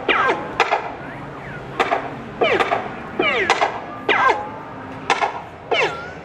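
Arcade shooting-gallery guns firing their electronic shot sound effect: a sharp crack followed by a falling whine, about eight shots in quick succession.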